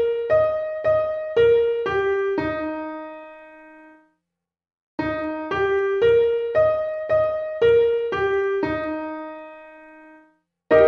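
Piano playing an E-flat major arpeggio, E♭–G–B♭–E♭ up and back down with the top note repeated, about two notes a second. It opens on the tail of one pass, the last low E♭ held and fading, then after a short silence the whole arpeggio is played again, ending on a held low E♭.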